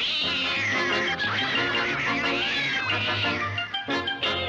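Cartoon cat fight: several cats yowling and screeching in wavering, rising and falling cries over orchestral scoring, breaking off just before the end.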